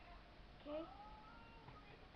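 Only speech: a child's single word "Okay?" with a rising pitch about half a second in, otherwise near-silent room tone.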